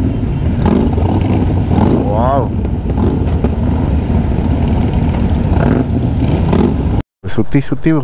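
Motorcycle engines and exhausts of a group of bikes riding on the road, a steady low engine noise with voices over it; it stops abruptly about seven seconds in, and talk follows.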